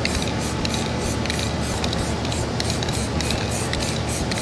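Aerosol rattle can of UV-cure primer spraying a light second coat onto a panel: a steady hiss that pulses rapidly, about five times a second.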